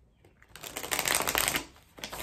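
A deck of tarot cards being shuffled by hand: a dense, rapid run of card clicks starting about half a second in and lasting about a second.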